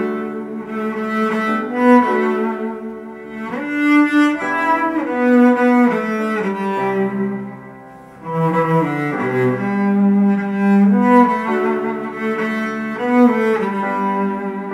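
Solo cello bowed in a slow melody of long sustained notes, some sliding into the next; the phrase breaks off briefly about eight seconds in, then carries on.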